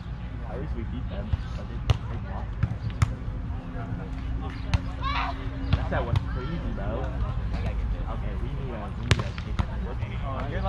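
Volleyball being played on grass: several sharp slaps of hands and forearms striking the ball during a rally, the loudest about two, three and nine seconds in, with players calling out at a distance.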